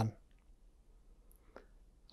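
The end of a man's spoken word, then quiet room tone with one faint click about one and a half seconds in.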